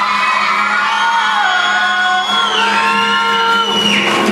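A woman singing live into a microphone, holding a long high note that slides down near the end, with musical accompaniment.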